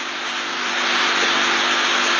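A steady rushing noise, like a passing aircraft or a running machine, that grows gradually louder, over a faint steady hum.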